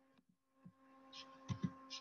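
Quiet video-call audio: a faint steady hum, with three faint low thumps and a few short soft hisses in the second half.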